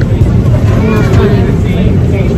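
Airliner cabin noise: a loud, steady low drone from the engines and airflow, with faint voices over it about a second in.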